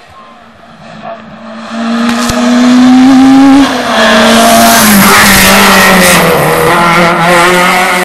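A hillclimb race car's engine at high revs, coming up fast and growing loud within the first two to three seconds. The revs drop briefly about three and a half seconds in, then the car passes close by under hard acceleration.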